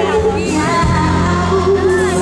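A woman singing a pop song live into a handheld microphone over a band accompaniment, holding wavering notes.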